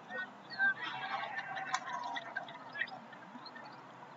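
Indistinct distant voices of rugby players calling on the field around a scrum, with one louder short call just over half a second in.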